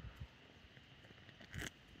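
Faint sounds of a man drinking beer from a can: quiet swallowing, with one brief soft rush of noise about one and a half seconds in.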